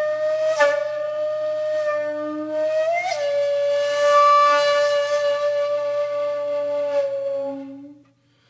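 Background music: a flute-like wind instrument playing long, slow held notes with a few changes of pitch and one short slide, fading out near the end.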